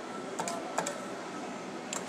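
A few light, sharp clicks from a claw machine's joystick as the claw is moved into position, over steady background noise.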